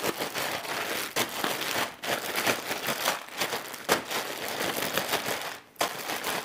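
Plastic zip-top bag crinkling and crackling as it is shaken, with the cut vegetables and shrimp in marinade tumbling inside. It stops briefly near the end.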